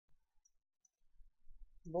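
Near silence with a few faint clicks in the first second and a low rumble, then a woman's voice begins a greeting near the end.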